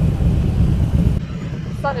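Busy street traffic, cars and motorcycles in slow traffic, heard as a steady loud low rumble with a wash of noise over it. Just past a second in it turns a little quieter and duller.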